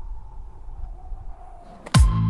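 Low steady rumble with a faint held tone that slowly fades, then a short whoosh rising into the first heavy kick drum of an electronic dance beat at the very end.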